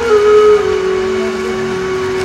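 An accompanying instrument holds a single steady note, with a fainter lower note shifting a few times underneath it.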